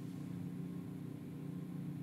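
Faint room tone: a steady low hum with no other events.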